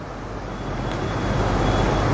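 Low rumbling background noise with a hiss over it, growing gradually louder, with no clear tone or rhythm.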